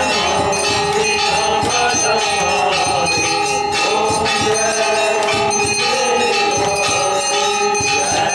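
Temple bells rung rapidly and continuously during a Hindu aarti, with devotional singing over them.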